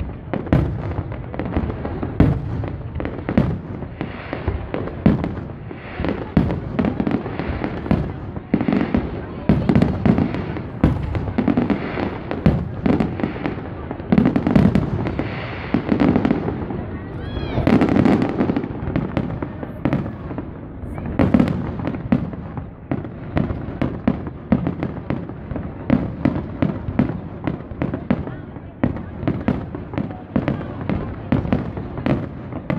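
Aerial fireworks display: shells bursting in a rapid, irregular series of bangs and crackles, with the chatter of a watching crowd underneath.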